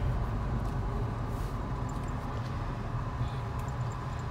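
Steady low road and engine rumble heard inside a car's cabin, easing a little as the car slows for a red light.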